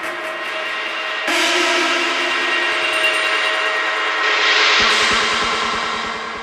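Techno track in a breakdown: sustained synth chords with no kick drum, and a rising noise sweep building near the end.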